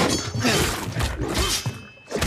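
Fight-scene sound effects: a rapid run of sharp crashing and breaking impacts, one after another, dying down near the end.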